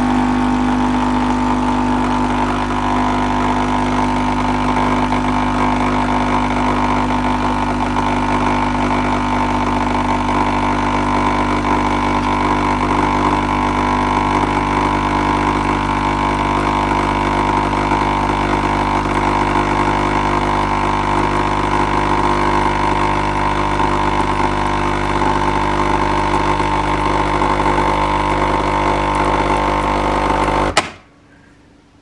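Capsule coffee machine's pump running with a steady hum while it pours a stream of frothy, milky coffee into a ceramic mug.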